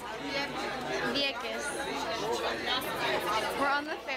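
Speech only: several people talking over one another, passenger chatter.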